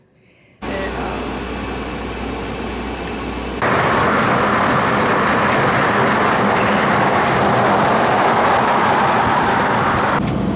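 Semi-truck driving on a freeway, heard from the cab: a steady rush of road and wind noise that steps up abruptly louder a few seconds in.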